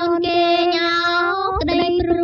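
A woman singing a Khmer pop song, holding one long note over light accompaniment, with a quick upward slide about a second and a half in.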